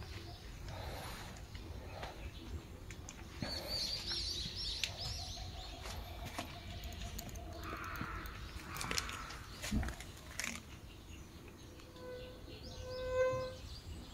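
Birds chirping, with a quick run of high chirps a few seconds in, over a faint outdoor background with a few knocks and rustles. Near the end a steady held tone, rich in overtones, swells and fades.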